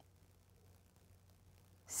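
Near silence: faint room tone with a low steady hum, and a short intake of breath at the very end as someone is about to speak.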